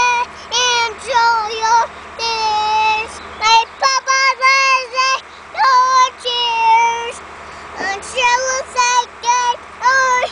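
A young child singing in a high voice: runs of short syllables and held notes that slide up and down, with brief pauses between phrases.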